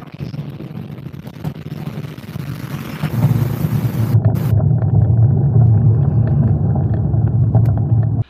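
Heavy trucks passing close on the road: a steady low engine and tyre rumble that grows clearly louder about three seconds in as a lorry draws alongside.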